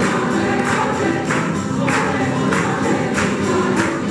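A tuna ensemble singing in chorus to strummed guitars and tambourines, with a steady beat of strokes a little under twice a second.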